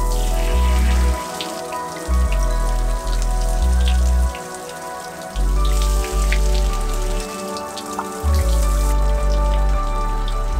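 Water falling from an outdoor rainfall shower, a steady hiss with scattered droplet spatters, under background music with a deep bass line that moves note by note.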